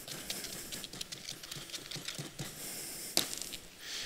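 Light, irregular tapping and scraping of a small hand tool packing damp sand inside a small cylinder, with one sharper knock about three seconds in.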